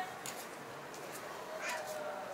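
Outdoor street ambience: distant people's voices, with a drawn-out high call near the end, over soft footsteps on pavement.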